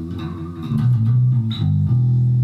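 Electric bass guitar playing a few low sustained notes, one note bent and wavered near the end: a fretting-hand vibrato.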